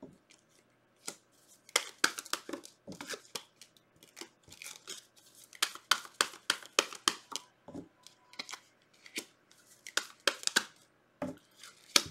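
Tarot cards being handled, shuffled and laid down one by one on a table: a run of quick, irregular crisp snaps and light slaps of card stock.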